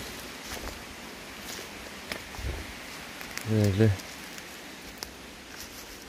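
Footsteps through dry leaf litter and twigs on a forest floor, with scattered snaps and rustles; a man's voice is heard briefly about three and a half seconds in.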